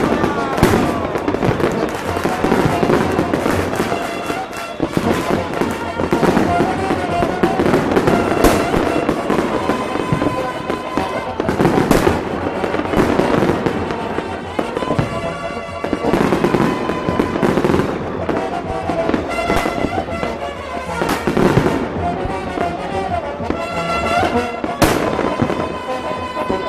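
Fireworks display going off: a string of sharp bangs, several seconds apart, with crackle between them, over music and people's voices.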